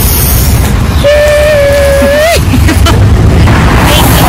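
Wind buffeting the phone's microphone, a loud low rumble. About a second in, a voice holds one high note for just over a second, sliding up as it ends.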